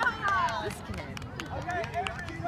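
Several overlapping voices of young children and adults chattering and calling out on an open field, with a few high, gliding child-like calls and some brief taps.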